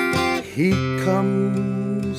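Acoustic guitar in an instrumental passage: strummed chords ring, then about half a second in a note glides up in pitch and is held.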